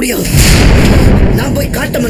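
A loud boom-like burst of noise with a deep rumble, lasting about a second, followed by a short stretch of speech.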